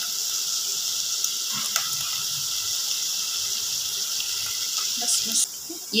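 Sliced button mushrooms and onions sizzling in butter in a pan, a steady hiss, as cream is poured in. The hiss drops off suddenly about five and a half seconds in.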